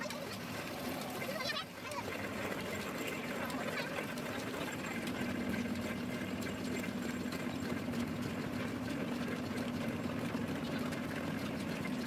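Mustard oil mill machinery running: a steady low hum under an even mechanical noise, with no change in pace.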